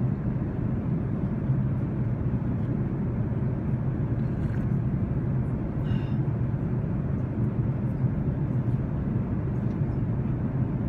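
Steady low cabin noise of an Airbus A380 in cruise flight: the constant mix of engine and airflow noise heard inside the passenger cabin.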